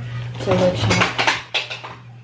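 Handling noise from a smartphone moved and held up right at the camera: a quick run of clicks and light knocks lasting about a second, which stops about a second and a half in.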